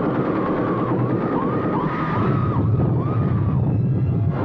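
Dense film soundtrack: a wavering, siren-like tone that dips and rises about twice a second over a heavy low rumble.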